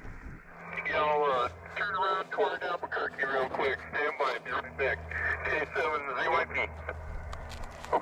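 A voice received on 2 m single sideband and played through a Yaesu FT-857D transceiver's speaker. The speech is thin and cut off in the highs, with a steady low hum beneath it.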